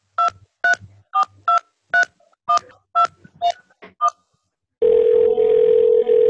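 Touch-tone telephone dialing: about eleven short dual-tone keypad beeps in quick succession. After a brief pause, a steady tone comes over the phone line as the call goes through.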